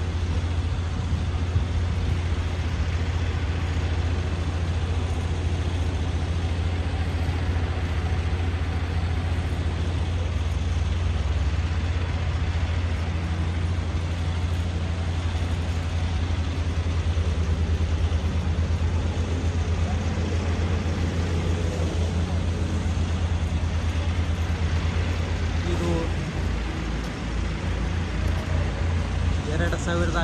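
Steady low rumble and noise of a large open construction site, with heavy machinery present; the rumble turns uneven over the last few seconds.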